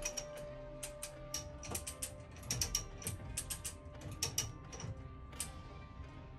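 Lever chain hoist being ratcheted by hand under the load of an engine, its pawl clicking in quick, irregular runs as the engine is raised.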